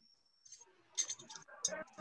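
A brief thin high tone, then a few faint sharp clicks with faint, broken speech between them, heard over a video-call connection.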